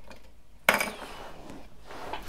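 A single short clack of fishing gear being handled against wood, about two-thirds of a second in, then quiet room noise.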